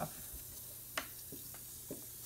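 Faint fizzing of a dissolving Beaker Creatures reactor pod in a bowl of water, with a sharp click about a second in and a couple of lighter ticks as fingers work in the bowl.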